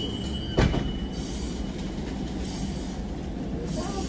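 Steady room noise of a restaurant with its kitchen running, with one sharp knock about half a second in.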